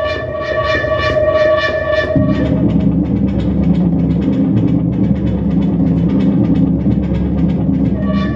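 Novation Supernova II synthesizer with its arpeggiator running, repeating short notes in an even rhythm over held higher tones. About two seconds in, the pattern switches to a lower, denser run of faster-repeating notes that carries on steadily.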